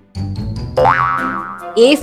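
Cartoon "boing" sound effect, a quick upward pitch sweep that slides slowly back down, over light children's background music.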